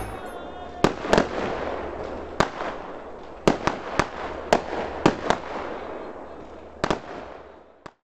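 Fireworks going off: about a dozen sharp bangs at uneven intervals, some in quick pairs, with crackling between them, fading out just before the end.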